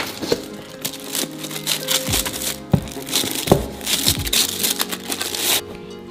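Crinkling and rustling of packaging, with a few knocks, as a boxed fashion doll is lifted out of a cardboard shipping box, over background music with held notes.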